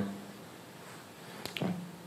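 Low room tone, then a single short, sharp click about one and a half seconds in, just before a man begins to speak.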